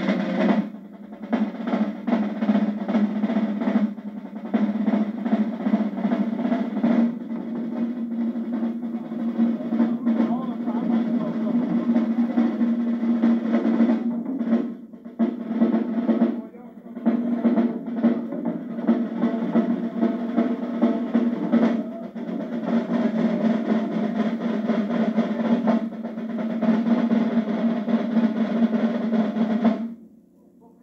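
Marching drumline of snare drums, bass drums and cymbals playing a continuous cadence. It breaks off for a few short gaps and cuts off suddenly at the end.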